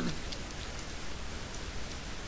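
Steady hiss of microphone background noise.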